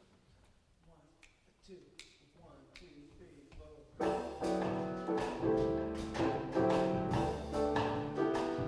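Faint, evenly spaced clicks of a count-off, then about four seconds in a jazz combo comes in together: grand piano chords over upright bass and drums.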